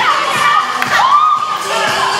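Several young women shrieking and whooping over one another in excitement, one voice holding a long high shriek from about halfway through.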